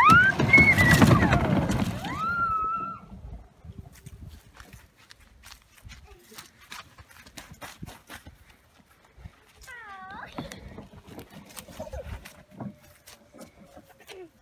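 A child's excited "woo" squeal, rising in pitch, over the rumble of a plastic ride-on toy car rolling across the ground in the first three seconds; after that only scattered light knocks and clicks.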